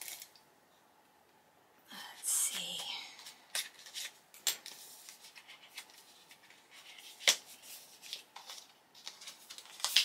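Packaging of an eyeshadow palette being opened by hand: after a brief near-silent pause, a burst of crinkling and tearing about two seconds in, then scattered rustles and sharp clicks as the box is handled, the sharpest click a little past seven seconds.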